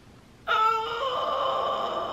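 A long, held, wail-like pitched sound from the film's soundtrack. It starts suddenly about half a second in and stays on one steady note, fading slowly near the end.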